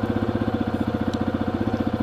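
Yamaha XT250's single-cylinder four-stroke engine idling steadily, with an even, regular beat.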